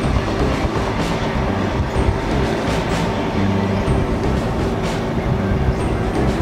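Steady rumble of a moving vehicle heard from inside the cabin: engine and tyre-on-road noise, with a few brief knocks or rattles from the vehicle jolting.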